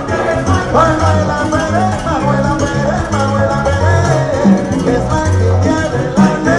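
Live salsa music from a band with orchestra: a steady, rhythmic bass line under a gliding melody.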